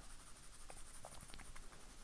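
Soft 4B graphite pencil faintly scratching on drawing paper in short shading strokes, with a few light ticks of the strokes in the middle.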